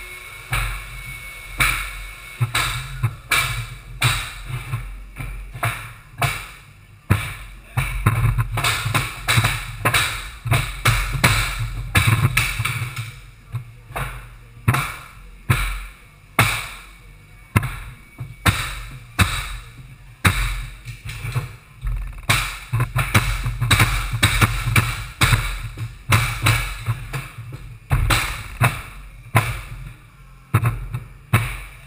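Pneumatic flooring nailers on long-reach extender handles, struck with mallets to drive nails into unfinished hardwood floorboards: an irregular run of sharp thumps, about one to two a second, from two nailers at once, over a low hum.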